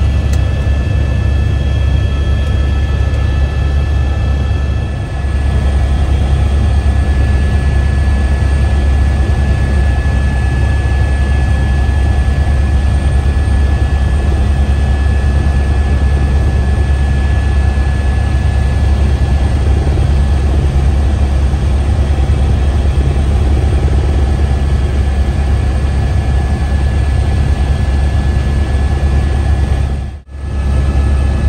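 A steady, loud, low engine rumble with a faint steady high whine over it, dipping briefly about five seconds in.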